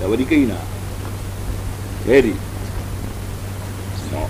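A man speaking Telugu in short phrases: a few words right at the start and one brief word about two seconds in, with pauses between, over a steady hiss and a low constant hum.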